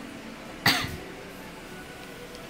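A single short cough from a person about two-thirds of a second in, over a quiet room background.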